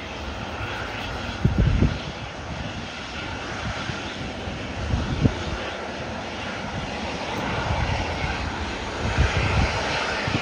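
Boeing 737-800's twin jet engines running at taxi power as it turns toward the runway, a steady whine-and-rush that grows a little louder near the end. A few short low rumbles break in about a second and a half, five seconds and nine seconds in.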